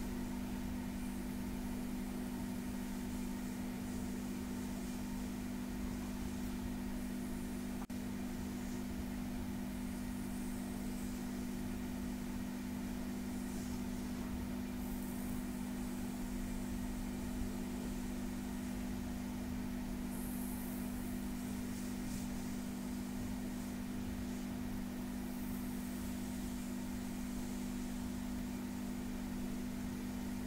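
Hands massaging a bare back: faint, soft rubbing of palms and fingertips over skin, coming and going in irregular swishes. Under it runs a steady low hum, the loudest thing heard.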